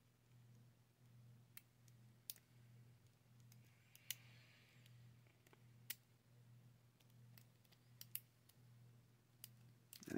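Faint, scattered sharp clicks of a steel lock pick working the pins of a brass pin-tumbler lock cylinder, about six louder clicks spread irregularly over a low steady hum. The attempt oversets the first pin.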